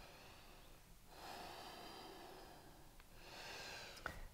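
Faint breathing of a person holding a yoga pose: one long breath starting about a second in and another near the end.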